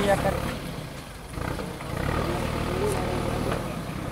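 Vehicle engine idling steadily, with people's voices talking faintly over it.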